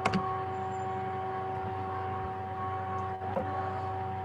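Steady electrical hum with a constant pitched whine over it, and a sharp click just after the start and a fainter one a little past three seconds.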